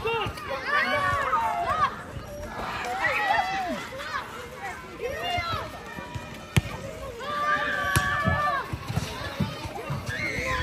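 Players and onlookers calling and shouting to one another, with two sharp smacks of a volleyball being hit, about six and a half and eight seconds in.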